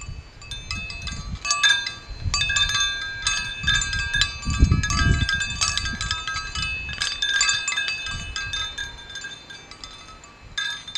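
Hard drive platter wind chime swinging in the breeze, the metal discs striking each other and ringing with many overlapping clear, high tones, busiest in the middle. Low gusts of wind rumble on the microphone, strongest about halfway.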